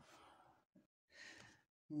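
Near silence with two faint, soft breaths about half a second long, and a small click between them.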